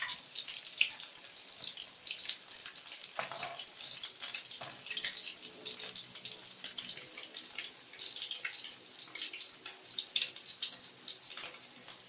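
Tortang dilis (anchovy and egg fritter) frying in hot oil in a steel wok: a steady sizzle full of fine crackles and pops.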